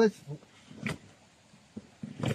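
Crossbow bolts being pulled out of an archery target, giving one short rasp about a second in.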